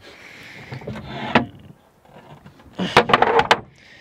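Goose Gear sleeping panels being slid into place in a truck canopy camper. A scraping slide builds and ends in a sharp knock about a second and a half in; then a louder rattling slide with a few clunks comes near the end.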